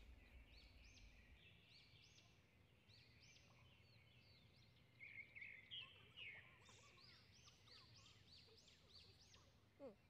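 Faint birdsong in near quiet: birds chirping short, repeated high notes, busier in the second half.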